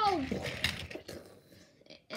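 A person's voice, playing a toy-train character, finishing a drawn-out line that falls in pitch, with a few short vocal sounds after it, then fading to near quiet.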